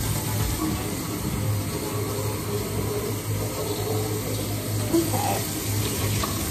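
Kitchen faucet running steadily into the sink while a teapot is washed under the stream, with a brief knock of the pot about five seconds in.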